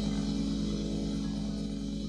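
A praise band's last chord held and slowly fading away as a worship song closes, with a fast, even pulse running under the held notes.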